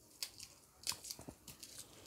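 Dried red chillies and garlic cloves roasting in a hot pan, giving a handful of faint, sharp crackles spread irregularly over two seconds.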